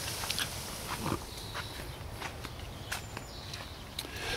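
Quiet footsteps on a grass lawn as someone walks alongside a van, with a few scattered light clicks.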